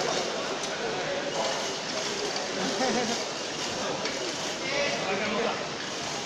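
Indistinct chatter of many voices in a large, busy hall, with no single voice standing out.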